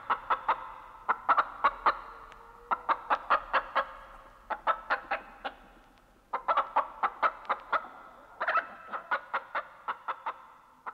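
Chicken clucking in quick runs of several short clucks, with brief pauses between the runs.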